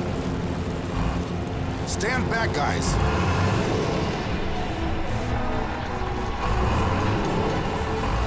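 Animated-cartoon action soundtrack: score music over a steady, dense low rumble of sound effects, with a brief wavering pitched sound about two seconds in.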